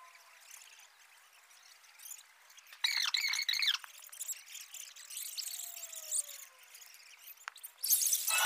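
Thin pitch-side ambience of a football match in a near-empty stadium: a faint steady hiss, with a brief loud cry or shout about three seconds in and scattered fainter calls after it.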